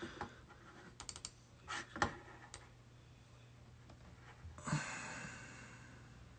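A few faint clicks of a computer keyboard, scattered over the first two and a half seconds, the loudest about two seconds in; then a short soft rush of noise near the end.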